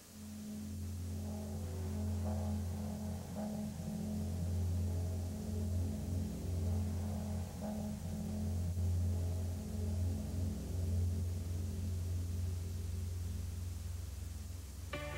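Low, sustained droning film music: a deep steady bass tone with fainter held notes above it, starting abruptly. It is the opening score of the horror film over its studio logos.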